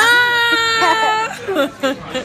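A high-pitched, playful vocal squeal held for about a second, sliding slightly down in pitch, followed by a few short vocal sounds.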